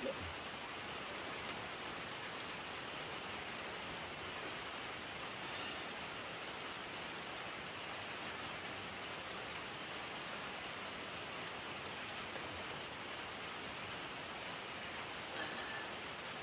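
Steady rain falling, an even hiss with no change through the stretch and only a few faint clicks above it.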